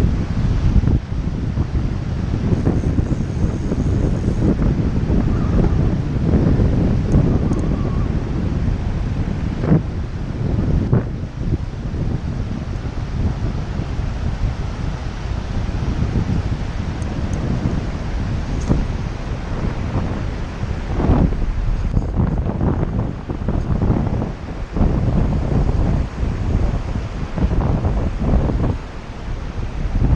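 Strong wind buffeting the camera microphone in uneven gusts, a loud low rumble, over the rush of river current.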